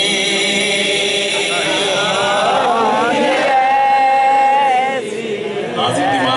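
Male naat reciter singing into a microphone through a sound system: ornamented, wavering melodic turns, then a long held high note in the middle before the line drops away near the end.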